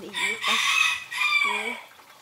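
A rooster crowing: one long call lasting about a second and a half, in two parts with a short dip in the middle.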